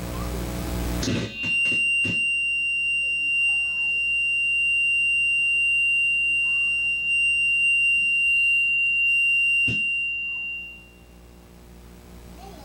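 A loud, steady high-pitched tone, held for about eight seconds. It starts with a few clicks about a second in, ends with a click near the ten-second mark, then fades out.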